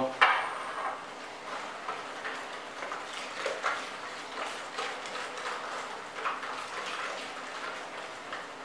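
Metal spoon stirring a runny mixture of water, yeast, sugar and eggs in a plastic basin: repeated irregular scrapes and light clinks of the spoon against the bowl, with a sharper clink just after the start.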